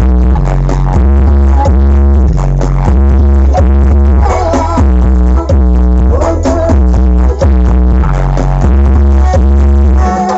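Loud DJ dance music played through the Brewog Audio carnival sound system, with a heavy bass line of deep held notes that change pitch in a steady repeating pattern.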